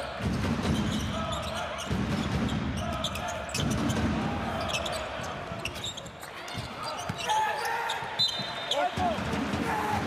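A basketball bouncing on a hardwood court amid the thuds and footfalls of play in a large arena, with sneakers squeaking sharply on the floor near the end.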